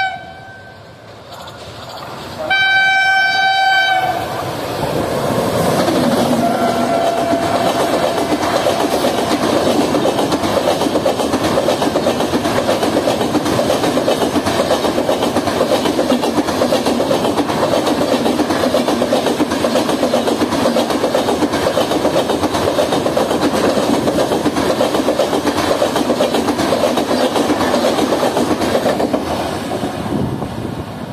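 Horn of a WAP7 electric locomotive, sounded once about two and a half seconds in. Then a long express train passes at speed, a steady loud rush of coaches with wheels clattering rhythmically over rail joints, fading near the end.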